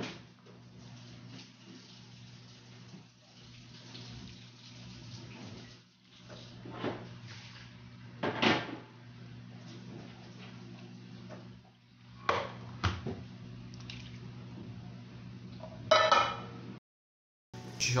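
Thin syrup being poured from a saucepan over rolls in an aluminium baking tray: a faint liquid pour and drip, broken by several sharp knocks of pan and tray, over a steady low hum.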